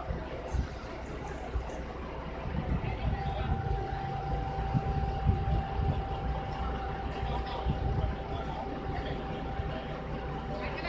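Crawler crane's diesel engine running with a steady low drone, growing louder from about two and a half seconds in, with a thin steady whine starting about three seconds in.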